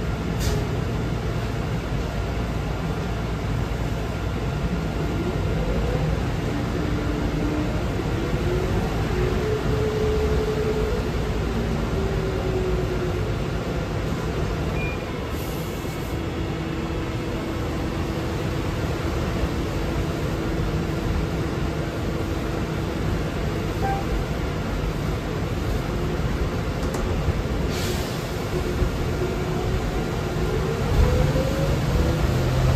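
Cabin of a 2006 New Flyer electric trolleybus under way: steady road rumble with the drive's whine gliding up and down in pitch as the bus speeds up and slows. A few short hisses of air, about 15 and 28 seconds in.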